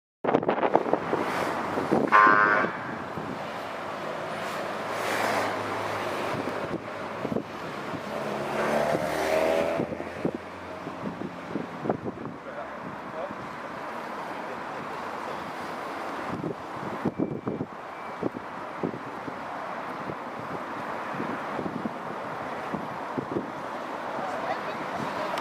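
Road traffic going by slowly: the boxer-twin engines of police BMW R1200RT motorcycles and a coach passing close, with an engine rising in pitch as it accelerates around nine seconds in. A short loud shout cuts through about two seconds in.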